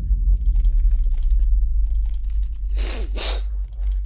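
A deep, steady low rumble with faint scattered clicks, and a short breathy hiss about three seconds in.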